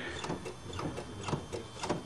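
Faint, irregular light mechanical clicks over low background noise, with no steady engine sound.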